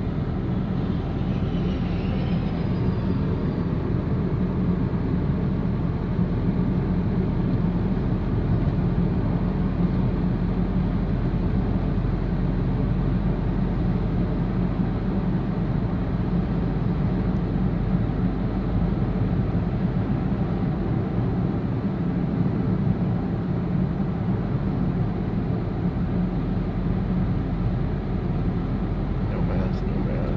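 Steady in-cabin road noise of a car driving at a constant speed: a low, even rumble of tyres and engine.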